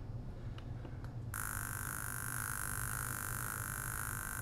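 SciAps Z-200 handheld laser analyzer firing a carbon test shot on a stainless steel sample: a steady, high-pitched hiss with a whine in it, starting about a second in and lasting about three seconds. It is one of several roughly three-second shots that are averaged into a single reading.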